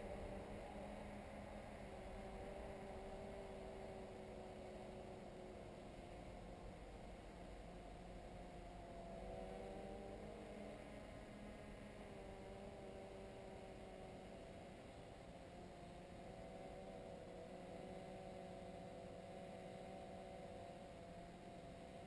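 Faint, distant hum of a quadcopter's four motors and propellers flying far overhead: several steady tones that drift slowly up and down in pitch over a light hiss.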